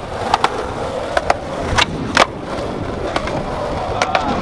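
Skateboard wheels rolling on concrete, a steady rumble broken by several sharp clacks.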